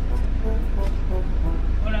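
Steady low rumble of a car idling, heard from inside the cabin, with faint music under it; a man's voice comes in near the end.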